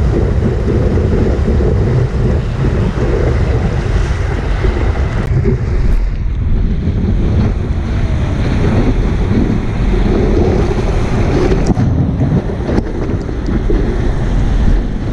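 Wind buffeting a surfboard-mounted camera's microphone over the rush of breaking whitewater as the board rides a wave: a loud, steady, rumbling noise. The hiss turns duller about six seconds in.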